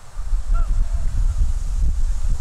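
Wind buffeting the camera microphone on an open field, a loud, uneven low rumble, with a faint distant call about half a second in.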